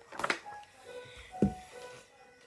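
A picture book's paper page being turned, a short rustle just after the start, then a thump about halfway through, over soft background music with held notes.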